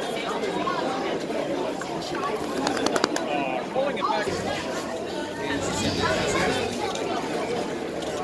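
Indistinct chatter and calls from players and sideline spectators on an open playing field, with a couple of sharp clicks about three seconds in.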